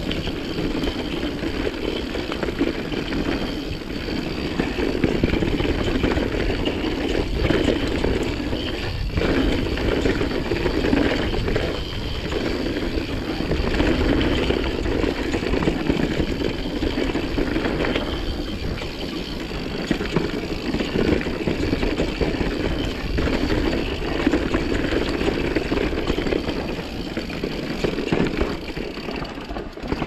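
Mountain bike riding down a dirt singletrack, with tyre noise and wind rush heard from a rider-mounted camera. A steady rushing sound with a low rumble, broken by a few short knocks from the bike over the trail.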